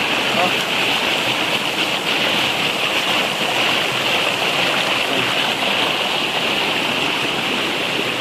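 Shallow rocky creek with a strong current rushing over rocks and small cascades: a steady hiss of whitewater.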